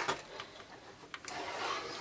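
A built LEGO brick model being handled: a sharp plastic click at the start, then a few faint clicks and light rubbing as its parts are turned.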